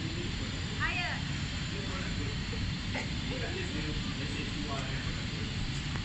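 Steady low background hum of a large shop's interior, with one short, high-pitched child's vocal call about a second in and a faint click near the middle.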